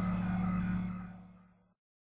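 Tail of an electronic intro jingle: a held low note with a fading wash above it, dying away about a second and a half in, then dead silence.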